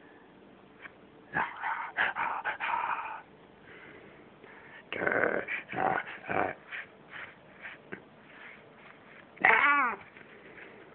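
House cat vocalising in short bursts about a second in and again about five seconds in, then a longer call that rises and falls near the end.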